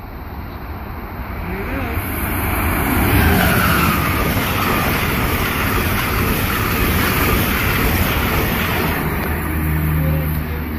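Amtrak passenger train led by an ACS-64 electric locomotive passing at speed: a rush of wheels on rail that builds over the first few seconds and stays loud as the cars go by.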